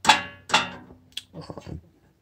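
Sheet-metal clanks from a barometric draft regulator being handled, its gate knocking in its round housing. There are two ringing clanks in the first half second, then a small click a little after one second.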